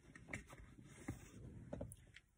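Faint rustling and a few small knocks of hands rummaging through a crochet bag.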